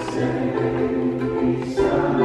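Ukulele being played with a singing voice: held notes changing every half second or so.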